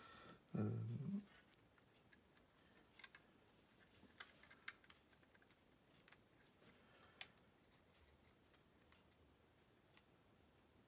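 Faint, scattered small clicks and taps as the plastic frame and circuit board of a Sharp PC-1251 pocket computer are handled and pressed together. A few sharper clicks stand out near the middle and again later.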